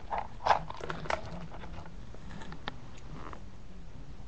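A few short, sharp clicks and knocks at close range: one about half a second in, another about a second in, and a lighter one near three seconds.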